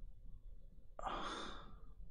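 A single sigh, a breath let out close to a headset microphone, about a second in and lasting under a second.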